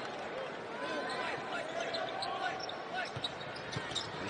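Live basketball game sound: a steady arena crowd murmur, a ball being dribbled on the hardwood court, and sneakers squeaking briefly a few times.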